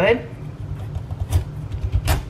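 Kitchen knife working through the hard rind of an acorn squash, with a sharp crack about a second and a half in as the blade pushes into the flesh.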